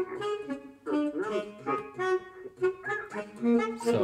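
Sampled baritone saxophone and other sampled instruments in Kontakt Player playing a computer-generated MIDI counterpoint: several overlapping lines of short, shifting notes.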